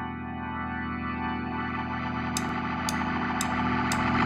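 A sustained keyboard chord run through effects, swelling steadily louder and brighter. Over its second half come four short, evenly spaced high ticks about half a second apart, counting in the band.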